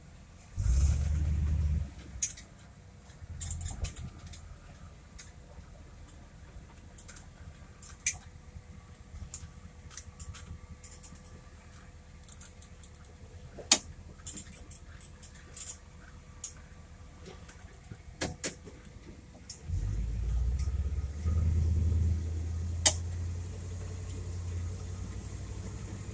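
Car engine and drive noise heard from inside the cabin of a 1965 Pontiac: a brief low rumble as it pulls away about half a second in, then quiet, low running with scattered small clicks and rattles. From about twenty seconds in, a steady low rumble returns as the car drives down the road.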